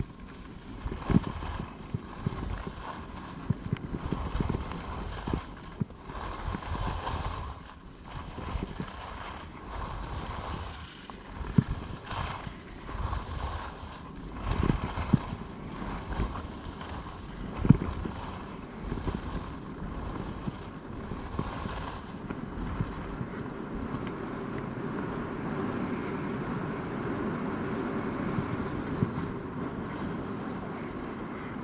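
Skis sliding and scraping over snow on a downhill run, with wind buffeting the microphone and several sharp knocks along the way. In the last third the sound settles into a steadier hiss.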